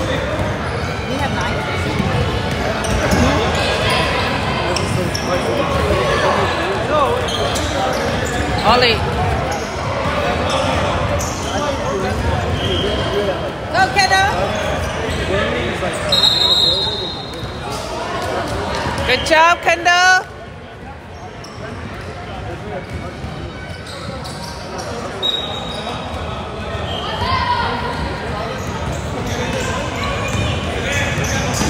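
A basketball being dribbled on a hardwood gym floor, with sneakers squeaking and spectators' voices echoing around a large hall. The sound is busy until about two-thirds of the way through, then quieter.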